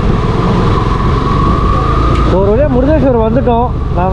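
Motorcycle running at low speed through traffic, its engine heard under a loud rush of wind noise on the rider's microphone.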